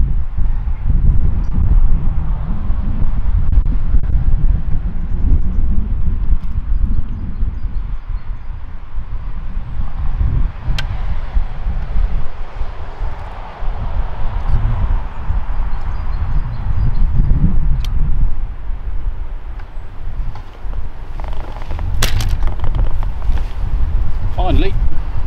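Wind buffeting the microphone with an uneven low rumble, and a vehicle passing on a nearby road partway through. A few faint clicks, the loudest near the end.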